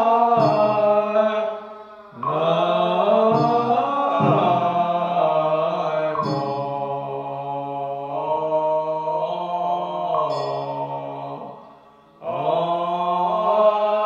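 Chinese Buddhist liturgical chanting, sung slowly in long held notes that slide gently in pitch, breaking off briefly for breath about two seconds in and again near the end.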